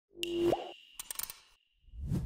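Sound effects for an animated logo intro: a pitched plop with a quick upward bend about half a second in, a thin high ringing tone that lingers, and a short flurry of quick clicks just after a second in.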